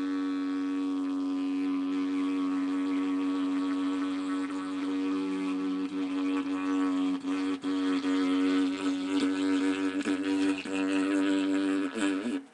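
Homemade didgeridoo cut from a thick giant butterbur (rawan buki) stalk, blown as one steady held drone note rich in overtones. From about five seconds in, the playing turns rhythmic, with the drone pulsing and dipping in a beat.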